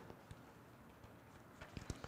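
Near silence with a few faint soft taps near the end, from Bible pages being turned and handled on the pulpit.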